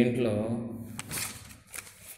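A man's voice trails off at the end of a word, then a short rustling hiss with a few sharp clicks follows about a second in.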